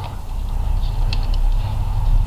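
A few light metallic clicks from a hand wrench working on the intake manifold bolts about a second in, over a steady low rumble.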